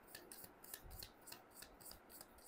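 A deck of tarot cards being shuffled by hand: faint, quick, irregular ticks and rubbing of card edges sliding against each other.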